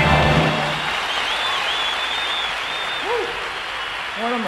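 A live band's final chord cuts off about half a second in, giving way to a concert audience applauding, with piercing whistles and a single shout about three seconds in.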